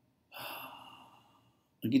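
A person's breath close to the microphone: one breath starting a moment in and fading away over about a second, with a spoken word beginning near the end.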